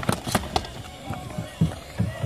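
A few sharp clacks in the first half second, typical of ball hockey sticks striking the ball and the plastic tile rink floor, followed by softer thuds of running footsteps.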